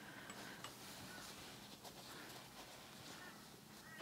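Near silence, with faint rustling and a few small ticks from felt and cotton fabric being rolled and handled between the fingers.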